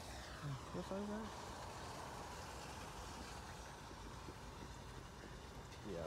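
Steady, even outdoor background noise with no distinct events, broken about half a second in by a brief low murmur from a man's voice.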